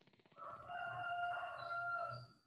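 A rooster crowing once in the background, one drawn-out call of about a second and a half, coming through a video-call microphone.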